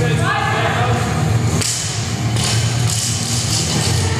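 A loaded barbell with rubber bumper plates is dropped onto a rubber gym floor, giving a single thud about one and a half seconds in. Loud rock music plays throughout.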